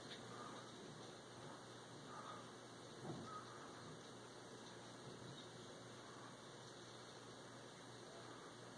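Near silence: room tone, with a faint brief sound about three seconds in.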